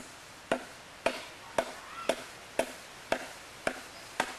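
Steady chopping into a block of wood with a hand-held blade, sharp strikes at about two a second.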